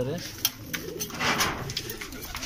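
Domestic pigeons cooing softly in a loft, with scattered clicks of beaks pecking grain from a feed tray and a brief rustle just past the middle.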